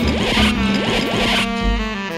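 Music, with a burst of scratchy, rasping noise laid over it for about the first second and a half, then the music alone.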